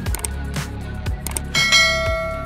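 Background music with a steady beat; about one and a half seconds in, a bright bell chime rings out over it and fades slowly, the sound effect of a notification bell being clicked.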